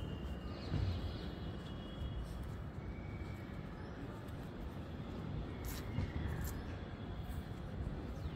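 Outdoor background: a steady low rumble of distant traffic, with a few faint, thin bird calls.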